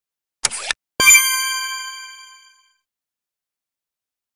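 A brief swish, then a bright bell-like ding that rings and fades away over about a second and a half: a cartoon success chime sound effect as the scanner light turns green.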